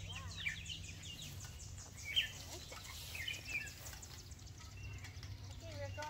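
Songbirds chirping in short, scattered calls over a steady low background hum, one chirp about two seconds in standing out as the loudest.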